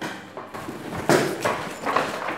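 Footsteps: three heavy steps in quick succession starting about a second in, after a quieter first second.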